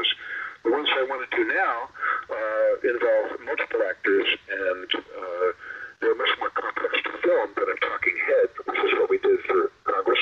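Continuous speech with a narrow, phone-like sound, lacking both deep bass and high treble.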